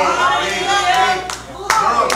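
Church congregation answering the preacher with clapping and calling out, a few sharp claps standing out toward the end.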